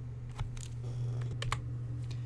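A few light, scattered clicks over a steady low hum.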